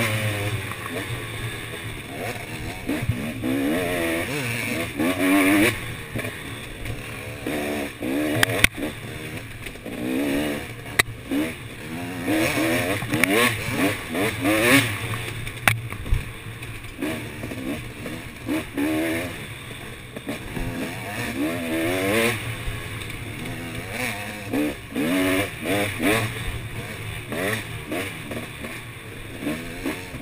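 Dirt bike engine revving up and down over and over as the throttle is opened and closed, its pitch rising and falling in short surges. A few sharp knocks stand out along the way.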